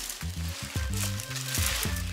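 Background music with a low bass line, under a continuous rustle of a nylon windbreaker and its plastic wrapping being handled.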